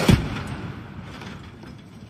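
20 mm rounds from an F-16's M61 Vulcan cannon striking the ground around target vehicles: a loud burst of impacts at the very start, dying away over the next second into a low rumble.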